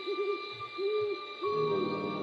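Owl hooting: a quick run of short hoots, then two longer hoots, over a steady high ambient music drone.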